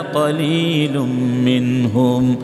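A man chanting a Quranic verse in Arabic in the melodic recitation style (tilawat), his voice gliding between pitches and then holding one long steady note through the second half.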